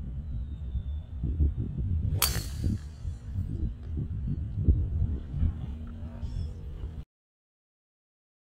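A golf club strikes a ball off the tee in a full swing, one sharp crack about two seconds in, over a steady low outdoor rumble.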